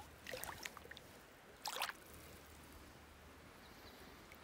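Faint small splashes and trickles of shallow river water, one around half a second in and a slightly louder one just before two seconds, over a low steady hiss.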